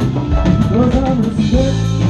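Live band playing: drum kit, bass and electric guitar, with a lead line that swoops up and down in pitch over them.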